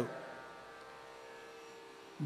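A pause in a man's speech, leaving only a faint steady electrical hum.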